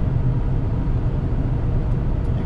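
Steady drone of a truck's engine and road noise from a moving truck running empty, heard from the cab: a continuous low rumble with a hiss above it.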